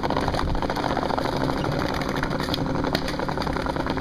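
Skateboard wheels rolling over a tiled plaza: a steady rough rumble with rapid clicks as the wheels cross the tile joints.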